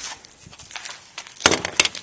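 Handling noise from a shot-up Nokia phone's plastic casing: faint scattered clicks, then a sharper knock about one and a half seconds in followed by a few quick plastic clicks.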